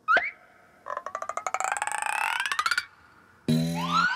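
Cartoon sound effects: a quick rising swoop, then a fast run of clicks whose pitch climbs steadily for about two seconds, and near the end a low, steady horn blast.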